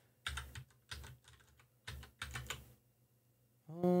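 Typing on a computer keyboard: three quick runs of keystrokes over the first two and a half seconds or so, then a pause.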